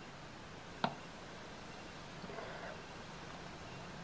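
Faint sound of a vaper drawing on a rebuildable e-cigarette atomizer: one short click about a second in, then a soft breathy inhale through the drip tip.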